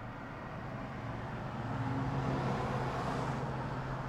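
A steady low hum under a rushing noise that swells to its loudest about halfway through and then eases off.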